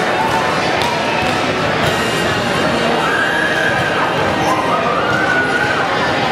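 Crowd of people in a large hall chattering and cheering, with a couple of drawn-out high calls from the crowd partway through.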